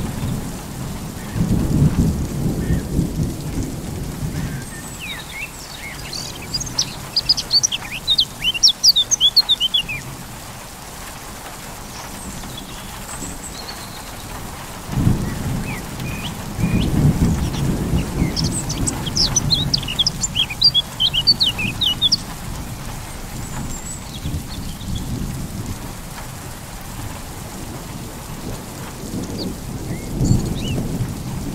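Steady medium rain with rolls of thunder, one at the start, a longer one from about halfway, and another beginning near the end. Two bursts of rapid high bird chirping come through the rain, the first a few seconds in and the second during the middle thunder roll.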